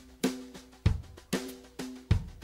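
Background music with a drum beat, a hit about every half second, over held low notes.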